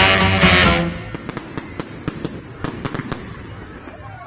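Loud music that cuts off about a second in, followed by fireworks crackling and popping in scattered sharp reports.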